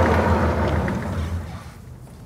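A rough, low noise that peaks at the start, then fades away over about a second and a half, over a steady low hum.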